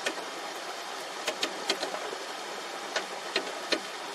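Paddlewheel aerator running on a fish pond: its motor hums steadily under the churning splash of water, with short sharp clicks at irregular intervals, several close together in the middle.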